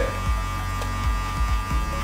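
Electric hair clippers buzzing steadily, run without a guard against the skin in short jabs to blend out a skin-fade line, over quiet background music.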